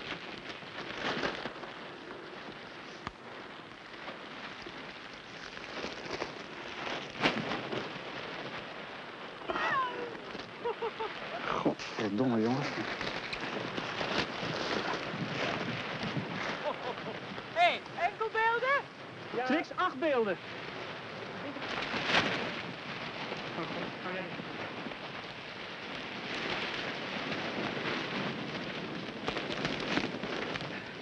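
A large plastic sheet being handled and pulled, rustling and crackling continuously. A few short, squeaky gliding sounds come in the middle.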